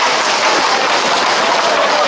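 Hooves of a tight group of Camargue horses clattering on a tarmac street in a steady, loud clatter, mixed with the running footsteps of people alongside.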